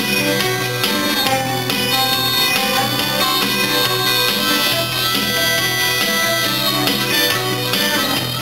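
Live rock band playing a harmonica solo over electric guitar, the harmonica holding long reedy notes.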